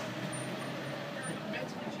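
Steady low hum of a car engine as a vehicle moves slowly, with faint voices in the background.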